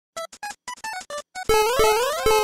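Retro 8-bit video-game sound effects: a quick run of short separate beeping notes, then, about one and a half seconds in, louder sweeping tones that rise in pitch and repeat.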